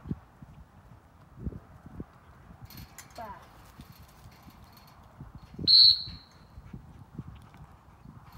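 A single short, sharp blast on a dog-training whistle, about six seconds in, signalling a retriever running out on a lining drill. Soft knocks come before it.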